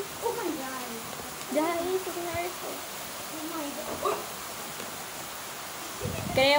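Heavy tropical-storm rain falling in a steady hiss, with a voice speaking quietly in short phrases over it.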